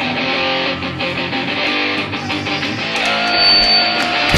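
Electric guitar played alone as a song intro: a riff of quick picked notes, settling on a held note near the end.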